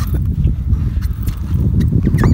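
Low, uneven rumble with light irregular knocks, the ambient sound of a small boat drifting at sea with water lapping against its hull.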